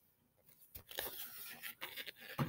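Pages of a picture book being turned and handled: paper rustling with a few short crinkles and ticks, starting about half a second in.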